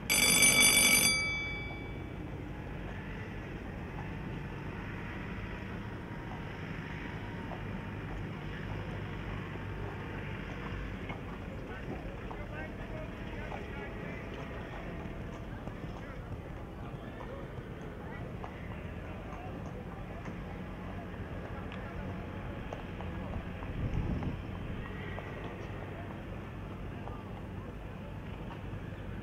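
Show-jumping start bell rings once briefly and fades, signalling the rider to begin the round. Then a horse cantering on the arena's sand footing over a steady background of faint voices, with a low thud near the end.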